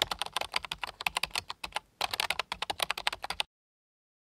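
Typing sound effect: rapid computer-keyboard keystrokes in two runs, the first about two seconds long, then after a brief gap a second run of about a second and a half that stops suddenly.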